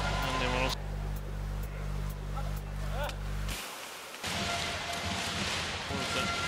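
A low, steady hum from the line-call review's replay graphic, with a few brief voice sounds over it, cuts off about three and a half seconds in. Noisy sports-hall ambience with murmuring voices follows.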